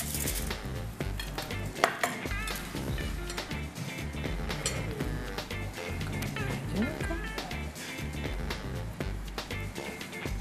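Forks clinking and scraping against a glass salad bowl and plate as salad greens are tossed and served, with background music underneath.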